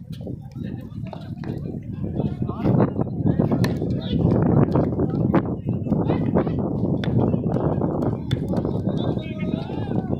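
Several men talking and calling at once, overlapping and indistinct, with a few scattered sharp clicks.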